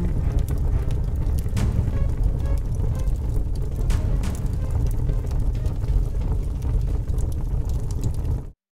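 Bass-heavy background music playing steadily, with no speech.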